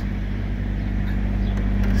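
Steady low hum of an idling engine, even and unbroken.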